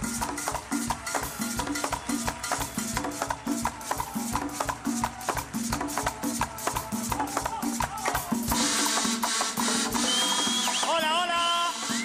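A carnival murga band playing a fast Latin carnival rhythm on drums and shakers, with a repeating bass figure under it. About eight seconds in, the drums stop and a crowd cheers, then high wavering notes glide up and down over the noise.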